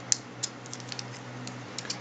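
Small plastic clicks and taps as a BOG LED bike tail light is fitted onto its plastic quick-release clamp: a sharp click right at the start, another about half a second in, then a few lighter ticks.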